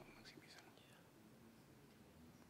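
Near silence: room tone, with faint whispering in the first second.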